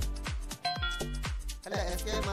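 Background music with a steady beat of deep bass drums whose pitch drops on each hit. A short bright chime sounds over it a little over half a second in.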